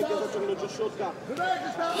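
Men's voices talking.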